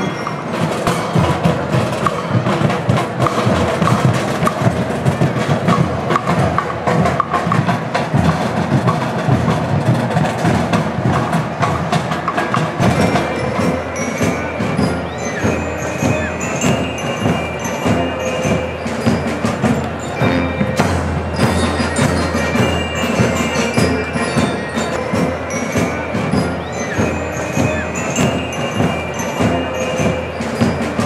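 Marching band playing a march: drums keep a steady, driving beat while bell lyres ring out the bright melody.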